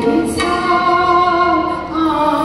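Manipuri classical dance music: a singer holds long, slightly wavering notes over instrumental accompaniment, with a new phrase entering about half a second in.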